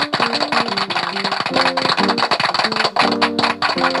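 Steady applause, played from an effects device rather than a live audience, with a short melody of changing plucked notes over it.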